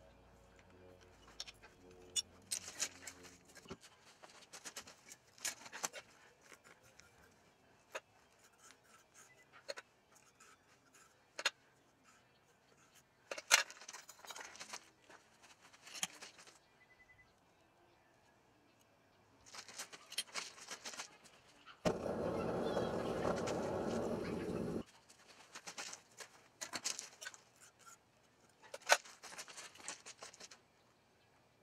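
Scattered sharp metallic clinks and rustles of tongs and crumpled aluminum scrap being fed into a crucible in a propane furnace, with a steady hiss lasting about three seconds past the middle.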